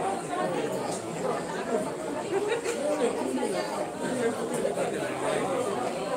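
Crowd chatter: many people talking at once in overlapping conversation, with no single voice standing out.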